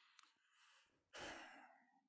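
Near silence, broken about a second in by one short, faint breath out, like a sigh.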